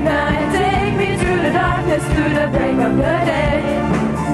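A live pop band with keyboards and drums plays a steady beat while several voices sing over it.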